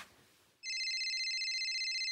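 A telephone ringing, a steady high warbling ring that begins about half a second in.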